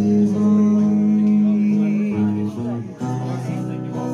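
Live solo performance of acoustic guitar with singing, recorded from the audience, with long held notes that change about two and three seconds in.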